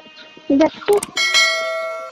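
Subscribe-overlay sound effect: a couple of short pops and a sharp click about a second in, then a bell chime of several steady ringing tones that fades and cuts off suddenly near the end.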